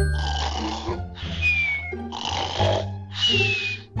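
A sleeping person snoring twice over background music. Each snore is a rasping in-breath followed by an out-breath ending in a falling whistle.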